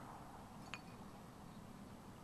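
Near silence: room tone with one faint, short click about three-quarters of a second in.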